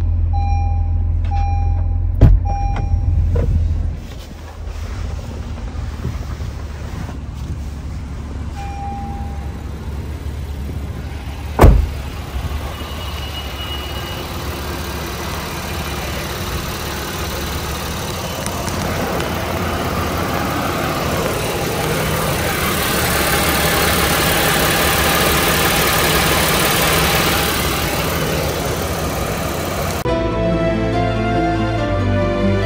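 2022 Honda Odyssey's 3.5-litre V6 idling. At first it is heard from the cabin, with a dashboard warning chime repeating through the first few seconds. A single loud thump comes about twelve seconds in, and after that the engine is heard from the open engine bay, the noise growing louder toward the end.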